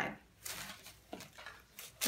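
Faint rustling of clothing and packaging being handled: a short soft rustle about half a second in, then a few light clicks and knocks.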